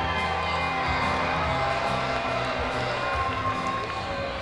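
Background music with held tones, with a crowd cheering underneath.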